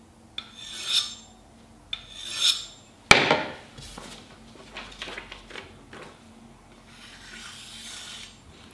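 Two rasping strokes of a chef's knife edge scraped along a ceramic rod, about a second and a half apart, deliberately dulling the edge. About three seconds in comes a sharp clack as the rod is set down on the table, then faint rustling of paper.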